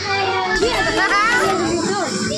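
Several children's high-pitched voices at once, talking, laughing and calling out.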